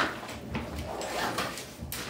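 A knock right at the start, then scattered light clicks and rustles as a person gets up from a desk and moves away.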